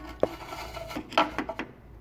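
Flat screwdriver blade scraping and clicking against metal as it is worked into a slot in the edge of a car door. There is a sharp click about a quarter second in and a few short scrapes past the middle.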